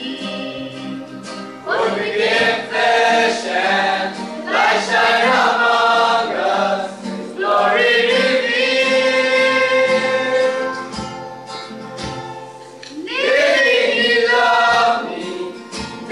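Gospel song sung by several voices in harmony, in long held phrases separated by short breaks.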